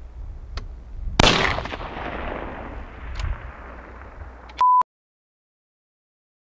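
A single rifle shot about a second in, its report echoing and rolling away for a few seconds. A short high beep near the end, then the sound cuts off to silence.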